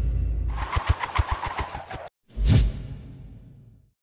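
Logo sting of music and sound effects: a low rumble under a fast run of sharp hits, a sudden cut to silence about two seconds in, then a single boom that fades out.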